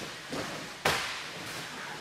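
Two people scuffling on gym mats: a soft knock, then a single sharp slap a little under a second in, from hands or bodies striking gis or the mat.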